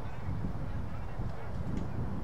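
A bird honking, over a steady low rumble.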